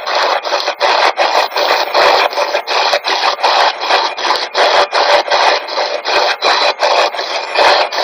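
SB-11 spirit box sweeping through radio stations: a continuous rush of radio static chopped into short bursts, about four a second.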